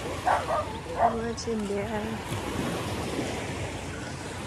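Steady wash of small surf on a sand beach, with wind on the microphone. In the first two seconds come a few short calls with wavering pitch, the loudest sounds, from a voice or animal off to the side.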